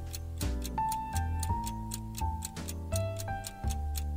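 Countdown timer ticking steadily, several ticks a second, over light piano background music.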